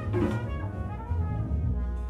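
Live jazz quintet playing: a horn holds sustained notes over a low double bass line.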